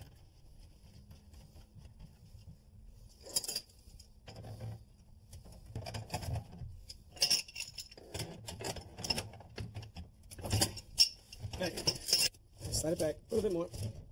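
Tools clinking and scraping on the metal fittings of a flexible gas supply line as it is connected to a gas fireplace insert. The clicks are irregular, sparse at first and busier after a few seconds.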